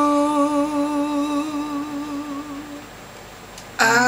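A man's voice holds one long sung note with a slight vibrato, fading out about three seconds in. After a short lull, the singing comes back in sharply just before the end.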